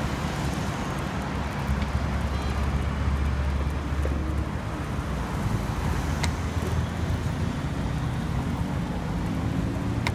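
City street traffic: a steady bed of road noise under a low engine hum that swells for a couple of seconds in the first half. Near the end an engine note rises as a vehicle pulls away.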